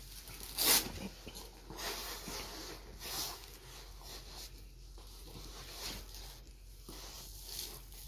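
Fabric straps and clothing rustling and scraping as straps are passed under and wrapped around a person's legs to tie them together, in a few short noisy bursts, the loudest just under a second in.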